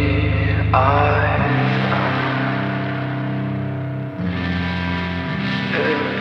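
Emo rock song with guitars over a sustained bass line, and a sung word about a second in. The bass note shifts twice.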